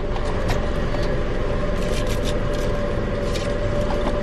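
A Mazda car's engine idling, heard from inside the cabin as a steady low rumble with a faint steady hum, with a few light clicks and rustles.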